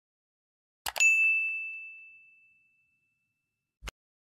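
Sound effect from an animated subscribe-button end screen. A short click is followed at once by a single bright bell-like ding that rings out and fades over about two seconds. Another short click comes near the end.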